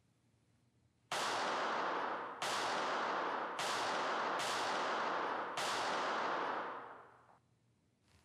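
Five handgun shots at uneven intervals, each followed by a long ringing echo that runs into the next; the last dies away about seven seconds in.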